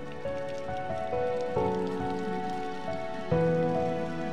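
Water spraying from a garden hose nozzle onto bonsai, a steady hiss like rain, under background music of slow, sustained melodic notes.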